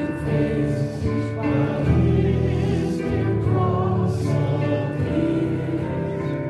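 A choir singing a hymn in long held notes, at a steady level throughout.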